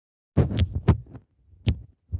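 About five sudden thumps at irregular spacing, starting about a third of a second in, the loudest near the start.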